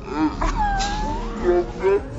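Women's voices, with one long, drawn-out vocal call that slides in pitch in the middle.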